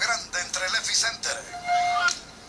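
A television sports commentator's voice coming through a TV speaker, talking quickly over the play and drawing out one long vowel near the end.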